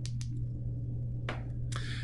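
Steady low hum with two quick clicks just after the start, a soft swish a little past one second, and a short breath near the end.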